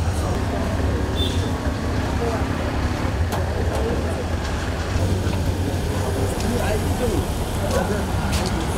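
Street noise: the steady low rumble of vehicle engines running in traffic, with people talking indistinctly around.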